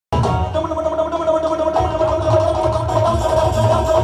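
Live devotional band music played loud over a stage PA: a steady held note runs over drum beats, and the low drumming fills out about two seconds in.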